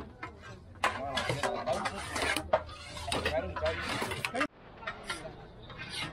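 Indistinct men's voices talking over occasional sharp clinks, fitting a metal ladle knocking against serving bowls and a large metal tray. The sound drops off suddenly about four and a half seconds in, leaving quieter background chatter.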